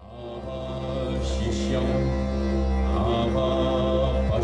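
Indian devotional music: chanted voices over steady sustained tones, fading in over the first second after a break.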